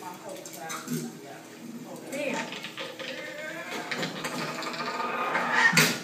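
Film soundtrack playing through classroom speakers: indistinct voices and clattering sound effects, with one sharp knock near the end.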